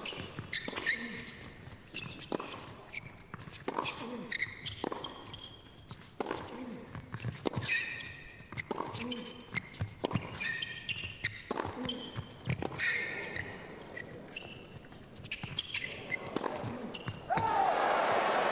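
Tennis rally on an indoor hard court: repeated sharp racket-on-ball strikes trading back and forth, with short high shoe squeaks in a reverberant hall. The sound grows louder near the end.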